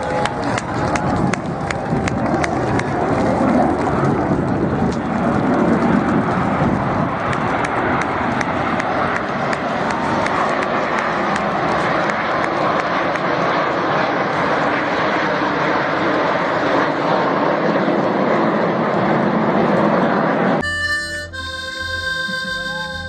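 Steady roar of jet aircraft flying a formation display overhead. Near the end it cuts off suddenly and music with held notes begins.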